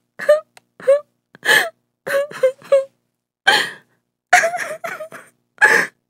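A woman sobbing: about a dozen short, wailing sobs and gasps, separated by brief silences, some in quick runs of three or four.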